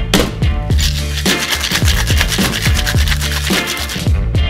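Funk background music with a steady beat. About a second in, ice rattles quickly in a stainless Boston shaker tin for a couple of seconds, as a cocktail is shaken.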